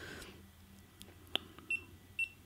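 Buttons on a GoPro Hero3 action camera pressed with a couple of faint clicks, then one short, high beep from the camera near the end, confirming the press as the menu selection steps down.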